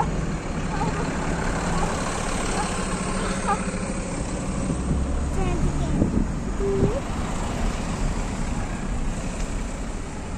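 Steady road and engine noise heard inside a moving car's cabin.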